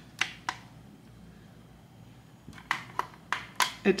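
Fingertip presses on the plastic buttons of a Verdant wall thermostat: two clicks, a pause of about two seconds, then a run of about six quicker clicks. The thermostat does not respond to the presses.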